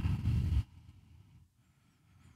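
A soft rush of noise lasting about half a second, then near silence.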